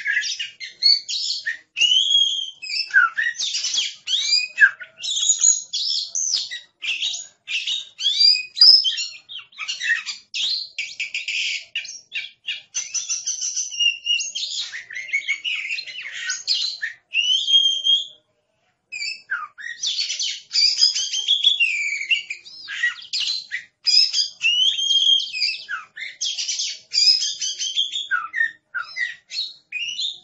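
Oriental magpie-robin (kacer) singing a long, fast, varied song of high whistles, trills and chattering phrases, broken by one short pause about 18 seconds in.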